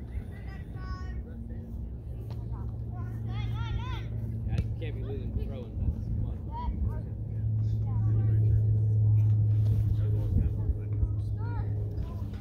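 Low, steady engine hum of a motor vehicle near the field, swelling to its loudest from about seven seconds in and dropping off at the end, with scattered voices calling out over it.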